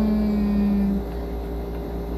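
A woman's voice holding a single drawn-out hesitation sound for about a second mid-sentence, then a pause over a steady low background hum.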